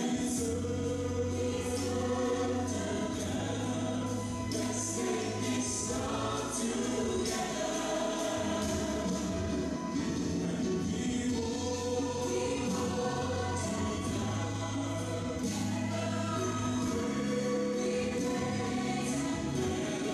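Gospel choir singing with a backing band: a steady beat under long held bass notes and sustained voices. It is played back from a projected video over the room's speakers.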